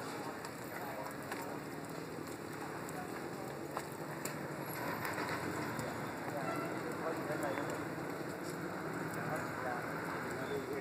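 Steady hissing and crackling from power cables burning on a utility pole, with a couple of sharp cracks about four seconds in.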